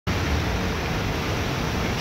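Steady rushing background noise with a low rumble underneath, unchanging throughout.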